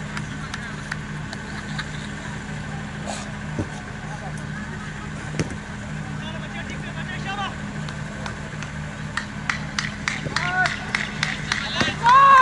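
Open-field ambience at a cricket ground: a steady low hum with scattered sharp clicks. Distant players call and shout across the field, and the loudest call comes near the end.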